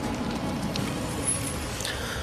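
Car running, with a steady low engine and road rumble heard from inside the cabin.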